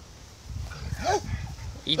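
A dog gives one short whine about a second in, its pitch falling, over a low rumble of handling noise.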